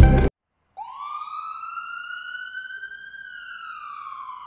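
Music cuts off abruptly; after a brief silence a single siren-like tone starts, rising in pitch for about two seconds and then slowly falling.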